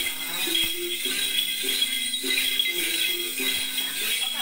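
Then ritual music: a steady jingle from a shaken cluster of small bells (chùm xóc nhạc) under a melody of held notes that step up and down about every half second to a second, sung or chanted.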